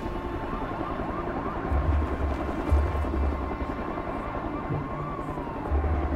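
City street ambience with a distant siren gliding up and down and falling away near the end, over low music swells.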